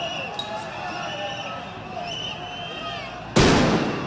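Voices in a street, then about three seconds in a sudden loud bang that dies away over about half a second: a tear gas canister going off close by.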